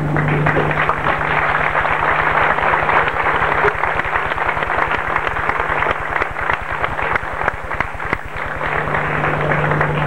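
A crowd applauding steadily, with a steady low hum underneath.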